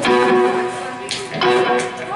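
A guitar strums a chord and lets it ring, then strums it again about a second and a half in.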